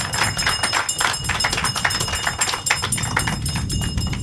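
An audience clapping: dense, uneven hand claps for about four seconds, with a faint steady high-pitched tone underneath.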